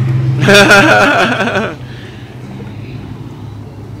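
A person's voice, loud, starting about half a second in and lasting about a second, over a steady low hum. After it, only quieter background noise remains.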